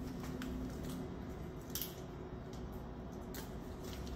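Low steady room hum with a few faint ticks and taps from bitters bottles being handled and dashed over a glass mixing beaker.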